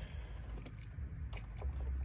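Faint clicks of a car's climate-control buttons being pressed, then the cabin blower fan comes on near the end with a low steady hum.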